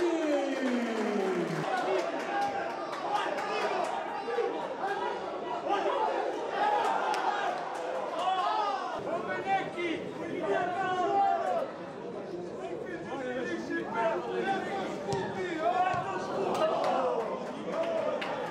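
Several men's voices shouting and calling over one another during a football match, with no single clear speaker. A tone slides downward in the first second or so.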